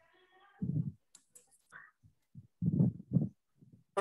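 A few sharp clicks and soft dull thumps of a computer being handled at the presenter's microphone while slides are advanced, with thumps about a second in and a cluster near three seconds.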